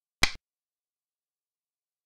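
A single sharp click about a quarter of a second in: the move sound effect of a xiangqi replay board, marking a piece being set down on a new point.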